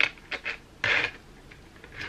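A few short rustling bursts of hands handling the magnetic lash kit's packaging, the longest about a second in.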